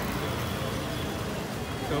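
Steady city street noise: a hum of traffic with people's voices in the background, and no single sound standing out.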